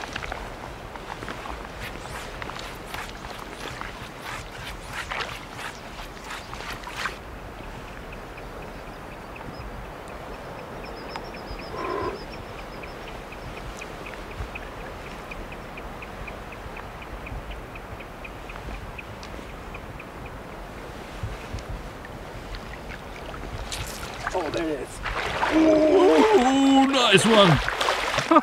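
Boots wading and splashing through shallow lake water, many short splashes over the first several seconds, then still outdoor air with faint regular ticking. Near the end a person's voice exclaims loudly.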